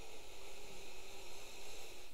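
A long, steady sniff: a man breathing in through his nose from a small beard oil bottle held up to his face to take in its scent.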